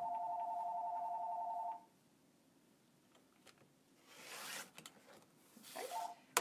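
An electronic two-tone ring sounds once, steady, for just under two seconds. A couple of seconds later a rotary cutter rolls through folded fabric on a cutting mat with a short soft swish.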